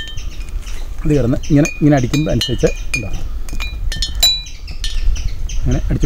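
Hanging glass bottles clinking as they are knocked together: a series of sharp clinks, each ringing briefly, the loudest about four seconds in.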